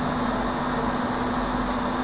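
Steady background hiss with a faint constant low hum: the room tone and noise floor of the recording.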